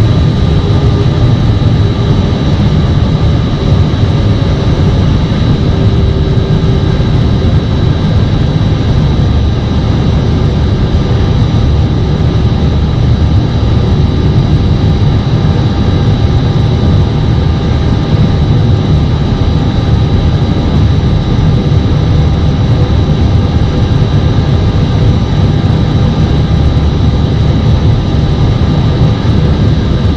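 Cockpit noise of an Airbus airliner taxiing with its jet engines at idle: a steady, loud low rumble with a few faint steady whines above it.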